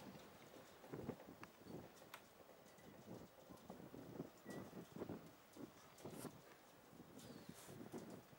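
Near silence: faint outdoor ambience with soft, irregular low knocks and a few faint high chirps in the second half.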